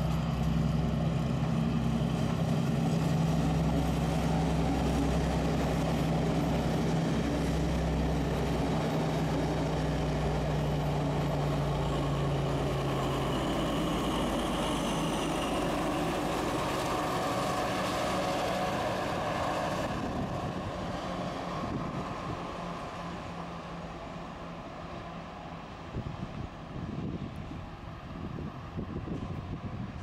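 MÁV M41 'Csörgő' diesel-hydraulic locomotive running with a passenger train past: a deep, steady engine drone for about the first thirteen seconds, then the rush of the train going by, which fades away over the last ten seconds.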